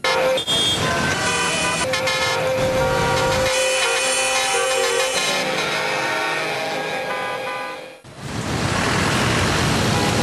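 Several car horns sounding together in held, overlapping blasts at different pitches, as in a traffic jam. After a brief dip about eight seconds in, they give way to the steady noise of road traffic.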